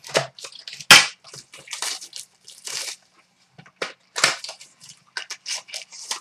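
Trading-card pack wrappers being torn open and crinkled by hand: a run of short, irregular rips and rustles, with the sharpest, loudest one about a second in.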